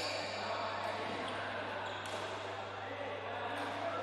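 Sports hall ambience: a steady low hum and a wash of distant voices, with a few sharp knocks about two seconds apart, likely rackets striking the shuttlecock or shoes on the court floor.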